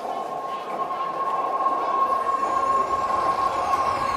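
Psytrance breakdown over a club sound system: no kick drum or bass, just a held high synth note under a noisy wash, with swooping effects coming in about halfway as it builds slowly louder.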